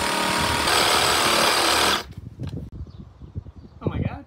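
Makita 40V cordless reciprocating saw cutting down through a timber beam with the blade held upright like a jigsaw. The motor whines under the rattle of the blade, turning harsher a little under a second in, and cuts off suddenly about two seconds in. A few light knocks follow.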